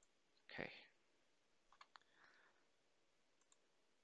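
A few faint computer mouse clicks on a near-silent line: a quick pair about two seconds in and two lighter ones near the end.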